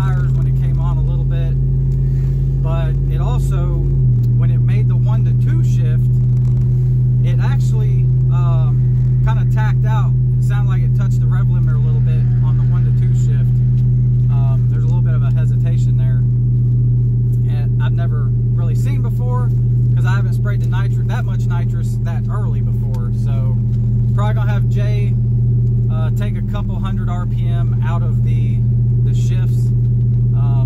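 Cammed Hemi V8 of a Ram truck idling, heard inside the cab as a steady low drone. The idle drops slightly in pitch about four seconds in.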